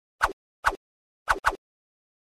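Four short pop sound effects in quick succession, each one marking an animated sticky note being pinned on; the last two come almost together.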